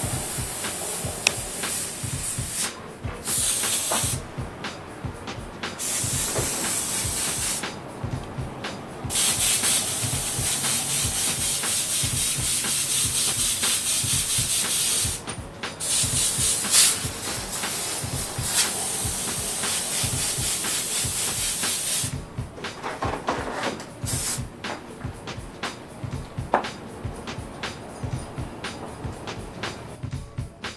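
An airbrush spraying paint in on-and-off bursts of hiss, each lasting one to several seconds with short breaks between, as white highlights are dotted onto airbrushed lettering. The spraying stops about 22 seconds in, and a rapid low pulsing runs underneath the whole time.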